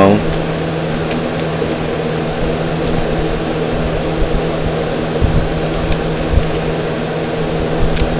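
A steady mechanical hum, with a few soft knocks from a plastic wrestling action figure being handled in a toy ring.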